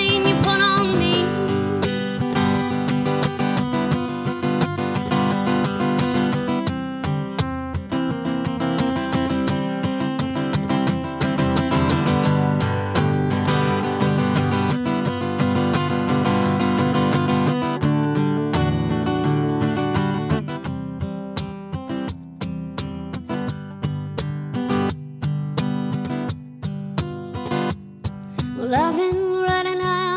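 Solo acoustic guitar strummed through an instrumental break in a country song. A sung note fades out at the start, the strokes grow sharper in the second half, and singing comes back just before the end.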